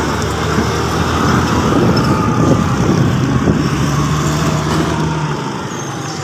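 Motorbike engine running as the bike is ridden along, with road and wind noise. A steady low engine hum drops away shortly before the end.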